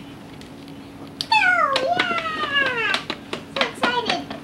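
A long, falling meow-like call about a second in, followed by a few short clicks near the end.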